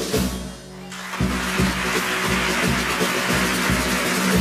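Carnival chirigota band playing between sung verses: a steady bass-drum beat with snare drum and guitars, dropping briefly about half a second in before the full band comes back.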